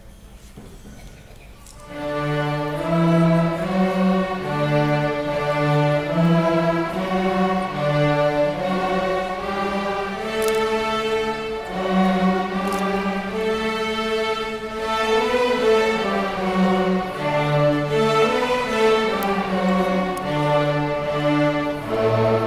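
Young students' string orchestra, mostly violins, playing a slow melody together in unison as a warm-up for their tone. The notes are held and move step by step, starting about two seconds in after a short quiet pause.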